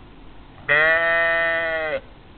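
A sheep bleating once: one loud, long call that starts about two-thirds of a second in, holds a steady pitch for over a second and dips slightly as it ends.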